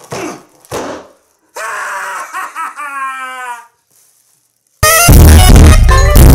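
A drawn-out groan, falling in pitch, from a man straining to squash a foil heart balloon. After a second of silence comes a sudden, very loud, distorted sting of music or screaming that lasts about two seconds.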